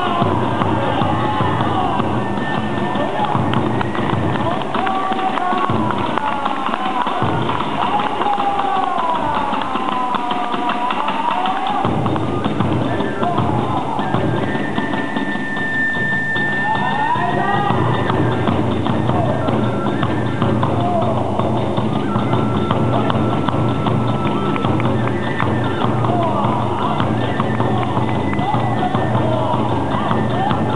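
Hiroshima kagura music accompanying a dance: a fast, continuous beat of drum and hand cymbals under a flute melody that slides up and down in pitch, with one long high note about halfway through.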